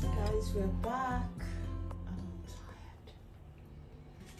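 Soft background music with sustained low notes, with a brief voice over it in the first second or so; the sound fades toward the end.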